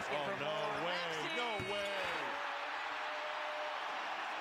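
Televised basketball game: a man's drawn-out exclaiming voice over steady arena noise, with a ball bouncing on the hardwood court.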